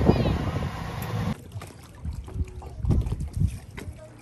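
Wind buffeting the microphone on the deck of a sailing catamaran under way, a low rushing noise with the sea running past. A little over a second in it cuts off abruptly to a much quieter scene with faint sounds.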